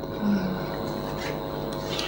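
Steady room hum picked up by the lecture microphone, with a faint rubbing noise and a brief low hum about a quarter second in.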